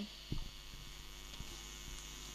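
Steady low hum and hiss from an amplified sound system left open between announcements, with one soft thump about a third of a second in.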